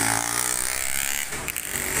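Small motorbike engine running as it passes close by, with a couple of brief knocks about one and a half seconds in.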